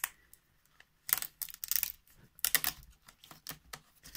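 Plastic display bezel of a Lenovo ThinkPad X1 Carbon Gen 3 laptop being prised off, its clips coming loose in two clusters of rapid clicks, about a second in and again just past the middle, followed by a few single clicks.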